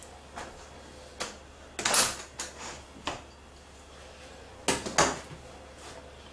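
Metal springform cake pan being unclipped and lifted off a baked sponge cake: a handful of short clicks and knocks. The loudest come about two seconds in and again near five seconds.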